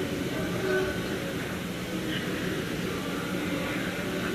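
Steady background noise, low and rumbling, with faint, distant voices murmuring in it.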